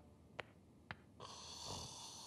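A person snoring faintly: a breathy, drawn-out snore that starts a little over a second in, after two faint clicks.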